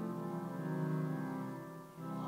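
Women's choir singing a hymn in Twi, holding long notes; the sound dips briefly near the end at a break between phrases.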